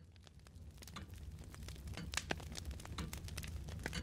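A faint bed of scattered crackles and clicks over a low hum, slowly fading in.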